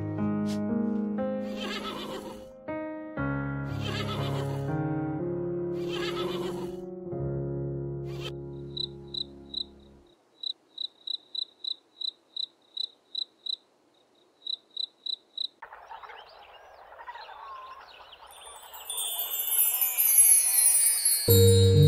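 Soft instrumental music with sustained chords for about the first half, then a cricket chirping alone: short, high chirps about three a second, with a brief pause before the last few. Near the end a faint hiss gives way to chiming tones.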